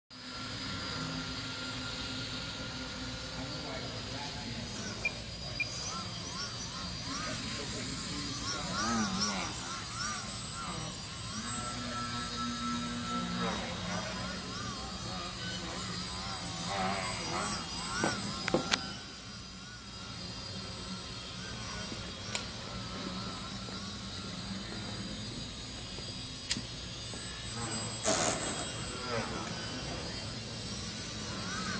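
Electric motor and propeller of a Hitec Extra 330 indoor foam RC aerobatic plane, whining steadily with a pitch that swings up and down as the throttle changes, and a few sharp clicks.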